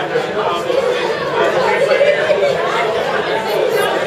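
Crowd chatter: many people talking at once in a large, reverberant room, steady throughout.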